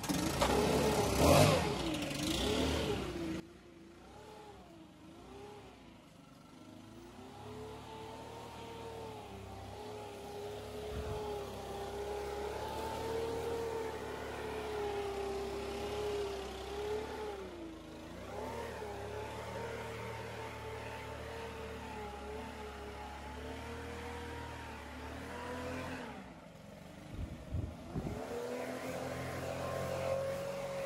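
Gas backpack leaf blower engine revving loudly for the first few seconds, then running on steadily with its pitch wavering up and down as the throttle is worked.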